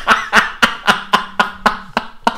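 A man laughing hard in a rapid run of short laughs, about four a second.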